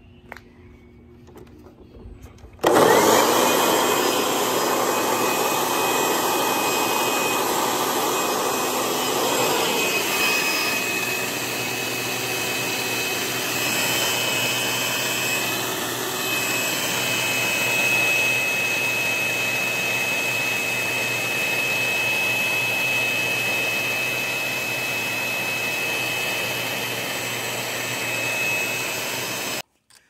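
Single-speed 12-amp Craftsman corded electric leaf blower switched on a little under three seconds in, running steadily with a rush of air and a high whine, at about 78–79 dB on a phone sound meter. It cuts off abruptly just before the end.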